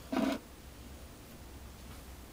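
A brief scrape of an antler-handled fire steel being moved on a concrete floor, lasting about a quarter of a second just after the start, followed by faint steady room tone.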